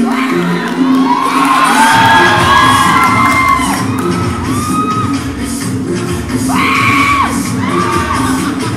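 Dance music playing loud in a gym, with an audience shouting, whooping and cheering over it, the cheers loudest about one to three seconds in and again near the end.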